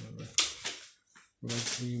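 A man's voice holding a drawn-out sound, then a sharp click about half a second in and a brief pause before he speaks again.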